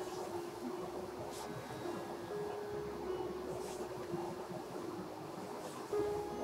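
Quiet room tone with a faint steady hum, and a couple of soft swishes of a cotton saree being unfolded and draped.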